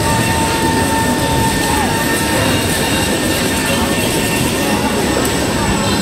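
Steady din of a busy street: crowd noise and passing scooters and cars blended into one constant noise, with a thin steady tone for the first two seconds or so.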